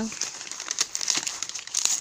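Gift wrapping crinkling and rustling as a small wrapped package is turned over and handled in the hands, a dense patter of small crackles.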